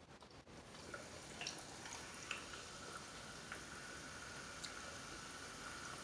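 Faint eating sounds: soft wet chewing with a few small scattered clicks, over a faint steady high-pitched hum.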